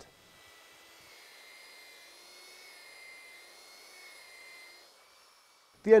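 Electric polishing machine with a foam pad running over cured epoxy resin with a coarse polishing compound: a faint, steady whine that fades out near the end.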